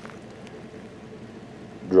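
Steady hiss of light rain falling.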